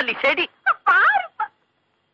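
A high-pitched voice speaking in short bursts whose pitch wavers rapidly up and down, cutting off about one and a half seconds in.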